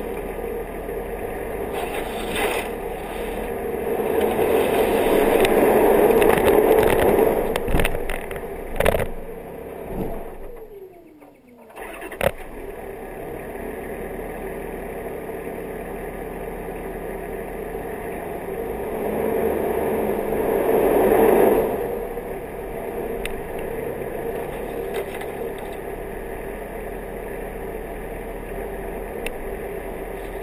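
The engine of an off-road vehicle runs steadily along a dirt trail. It gets louder as it pulls harder around five seconds in and again around twenty seconds in. Near ten seconds it drops away with falling pitch, then picks up again, with a few sharp knocks from bumps around the dip.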